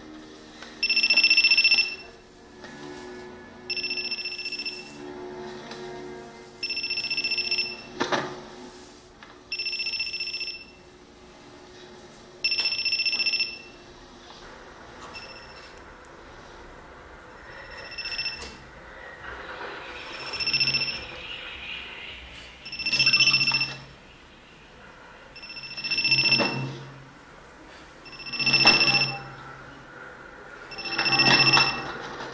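A telephone ringing with an electronic tone, each ring about a second long, repeating every two to three seconds with a longer pause in the middle, over background music.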